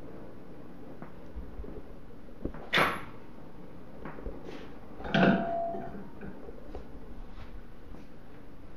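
Objects being handled on a workbench: a sharp knock about three seconds in, then a louder clank with a brief ringing tone about five seconds in, over a steady low hum.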